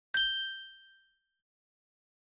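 A single bright, bell-like ding, struck once and ringing out over about a second: the sound effect for the channel's intro logo.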